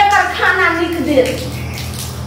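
A woman's high-pitched voice speaking for about the first second, then trailing off into a softer even hiss, over a steady low hum.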